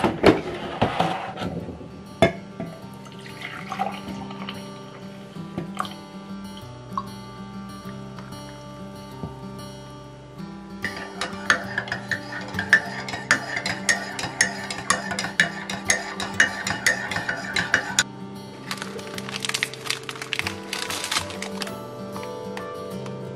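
Soft background music with held notes, over which a metal spoon clinks rapidly against the inside of a ceramic coffee mug while stirring, for several seconds in the middle. Near the end a plastic snack wrapper crinkles as it is torn open.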